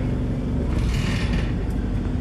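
Steady low engine rumble of a double-decker bus heard inside on the upper deck, with a brief hiss lasting under a second about a second in.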